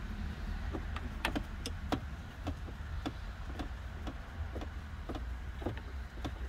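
Scattered plastic clicks and small knocks as a hose is worked off a camper's plastic water supply line fitting under a cabinet, over a steady low hum.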